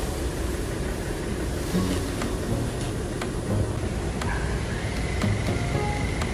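Street ambience dominated by a steady low rumble of vehicle engines.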